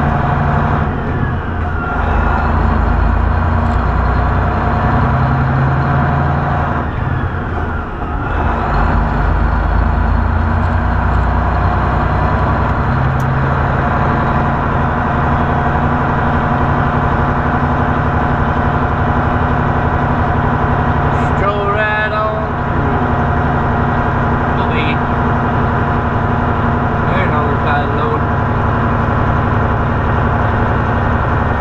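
Semi truck's diesel engine running steadily, heard from inside the cab as a loud, even low hum. About two-thirds of the way through there is a short, wavering higher-pitched sound.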